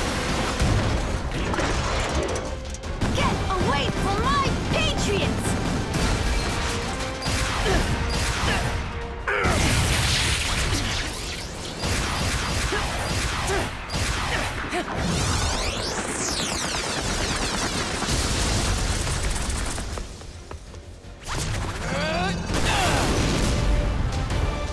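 Cartoon fight soundtrack: an action music score under crashes, booms and whooshes, with a brief lull about twenty seconds in.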